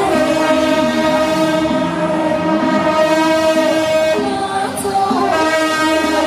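Traditional temple-procession band music: a wind instrument holds one long, bright note for about four seconds, breaks off, then sounds again near the end, over a lower melody that moves in pitch.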